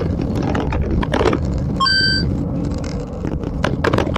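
Wind rushing over a bicycle-mounted camera's microphone at about 60 km/h, with scattered knocks from the bike on a rough road surface. A short electronic beep sounds about two seconds in.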